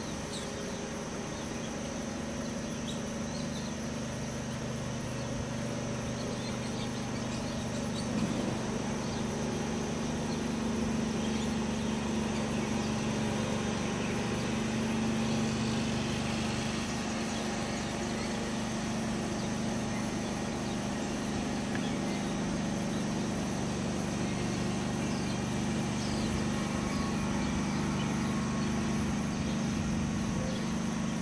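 Quadcopter drone's motors and propellers humming steadily in flight, with a brief knock about eight seconds in.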